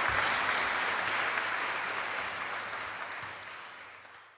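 Concert audience applauding in a church, the clapping fading out steadily.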